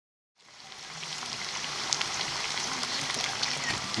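Pieces of meat frying in hot oil in a metal pan: a steady sizzle with scattered crackling pops. It fades in about half a second in, after a moment of silence.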